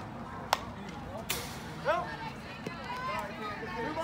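A sharp pop about half a second in, typical of a softball smacking into the catcher's mitt on a swinging third strike, then a brief hiss and spectators shouting and cheering.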